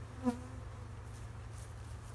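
A honeybee flying close past, a single short buzz about a quarter second in, over a steady low background rumble.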